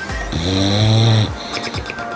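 An English bulldog snoring: one long snore that starts about a third of a second in and lasts about a second, over background music.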